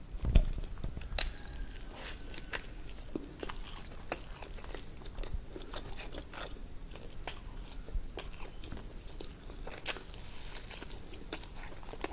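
Close-miked chewing and biting of crisp fried snacks: a run of sharp crunchy clicks and wet mouth sounds, with a louder crunch just after the start and another about ten seconds in.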